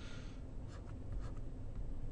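Faint scratches of a stylus writing on a tablet: several short pen strokes spread across the two seconds.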